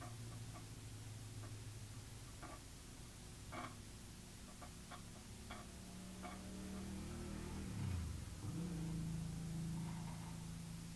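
Faint soft ticks and taps of fingers pressing a wet clay handle onto a teapot body, over a low steady hum. About eight seconds in, the hum dips in pitch and then settles at a higher, steadier tone.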